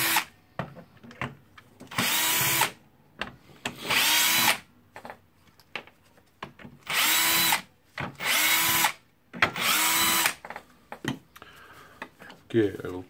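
Bosch cordless drill-driver running in about five short bursts of under a second, each one spinning up at the start, as it backs screws out of a circular saw's plastic motor housing.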